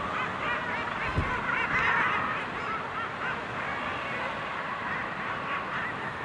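Common guillemot colony calling: many birds on a crowded breeding ledge giving short calls that overlap into a dense chorus, busiest about two seconds in. A brief low thump about a second in.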